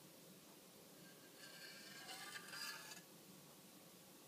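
Near silence with a faint scrape lasting about a second and a half in the middle, as thick fruit coulis is poured from a container into a glass jar.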